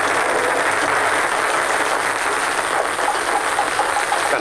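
Hundreds of ping-pong balls raining down and bouncing on a table-tennis table, a dense, steady clatter of light plastic hits.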